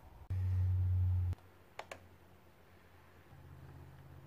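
A loud low hum that cuts in and out abruptly after about a second, followed by two quick computer mouse clicks close together.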